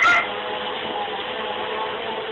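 Upright vacuum cleaner running with a steady drone and a constant hum. A brief sharp sound comes right at the start.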